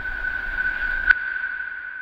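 Audio logo sting: a single steady high tone with a hiss around it starts suddenly, a sharp click comes about a second in, then the tone slowly fades.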